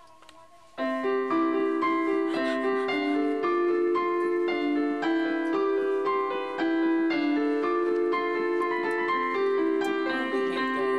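Digital piano being played: a melody of changing notes over held lower notes, starting suddenly about a second in and going on steadily.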